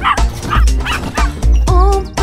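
A cartoon dog barking a few short times over children's song backing music, with the sung melody coming back in near the end.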